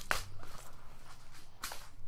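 Handling noise from objects being put down and picked up: a sharp knock just after the start, faint rustling, and a short swish near the end.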